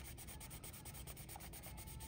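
Faint rubbing of fingertips over a glued paper rose's petal seam, pressing it so the glue holds and the layers don't separate.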